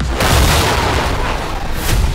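An explosion goes off about a quarter second in: a sudden loud boom and a long noisy rush after it. A second blast comes near the end.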